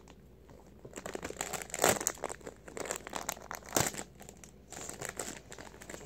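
Plastic soft-bait package crinkling and crackling as it is worked and pulled open by hand, with sharper crackles about two seconds in and again near four seconds.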